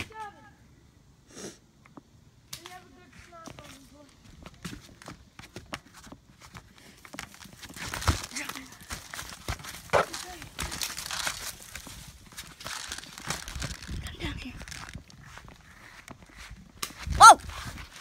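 Scattered clicks and rustling from a foam-dart blaster being handled and carried on the move, with faint voices calling out and a short, loud shout near the end.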